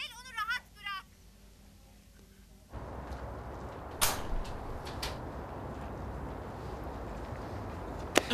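A warbling electronic ring, a quick run of chirping notes, sounds and stops about a second in. After a cut, a steady outdoor hiss follows with a few sharp clicks; the loudest is about four seconds in.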